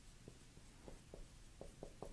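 Dry-erase marker writing on a whiteboard, heard only as a few faint, scattered taps in near silence.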